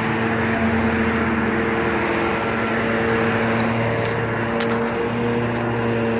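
An engine running steadily at idle, a constant hum that holds one pitch throughout.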